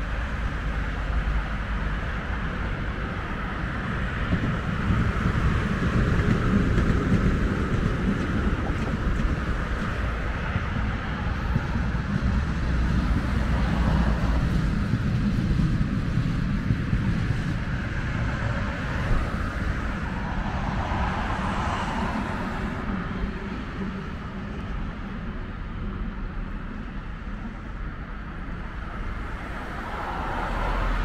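Street traffic noise beside a multi-lane road: vehicles passing and a tram going by on the tracks, swelling through the middle and easing near the end.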